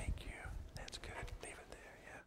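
Hushed, whispered talk picked up close on an open microphone, with a few low thumps, the loudest at the very start.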